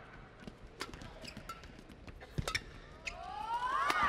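Badminton rally heard from courtside: scattered sharp racket strikes on the shuttlecock and footwork knocks on the court, with several quick rising shoe squeaks near the end.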